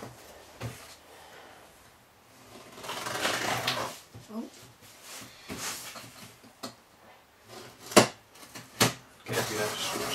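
A cardboard shipping box being worked open by hand: scraping and rustling of cardboard and packing tape, with two sharp knocks near the end.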